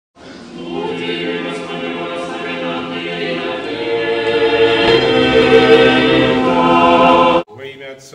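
Unaccompanied choir singing held chords that grow louder, then cut off abruptly near the end.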